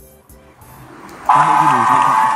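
A cheering-and-applause sound effect played back with CapCut's echo voice effect on it: a crowd cheering and clapping with a ringing echo. It starts suddenly about a second in and stays loud.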